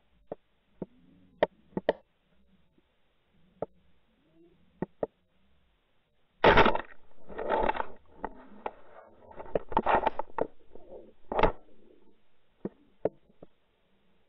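An underwater in-line camera's housing recording a run of sharp clicks and knocks as it is trolled. About six and a half seconds in, a loud burst of knocking and rattling begins and lasts about five seconds, as a lake trout strikes and bumps against the camera.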